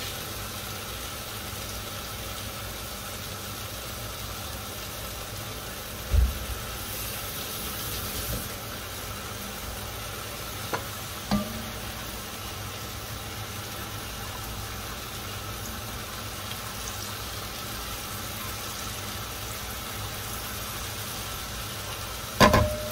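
Chopped onion, garlic and curry spices sizzling steadily in hot oil in an enamel pot while being stirred with a spatula, with a few short knocks of the spatula against the pot, one about a quarter of the way in and two near the middle.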